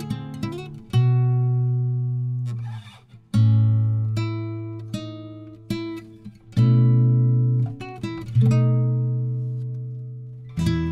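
Acoustic guitar music: a chord struck about every two to three seconds and left to ring and fade, with quick picked notes between the chords.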